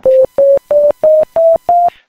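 Soundgin sound synthesizer chip playing six short, plain beeps in even succession, each a step higher than the last, like six piano keys played up a scale.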